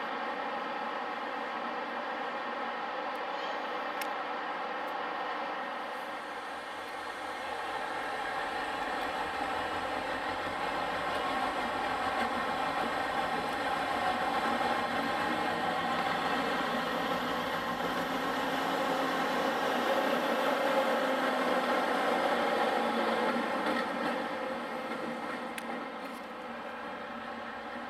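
A DB Schenker Class 60 diesel locomotive's engine runs steadily with a many-toned hum as the locomotive moves along the track. It grows louder from about seven seconds in and eases off near the end.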